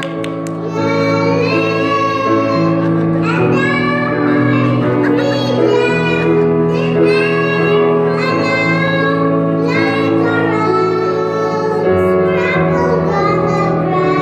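Two young children singing a song together into microphones, accompanied by sustained chords on an electronic keyboard.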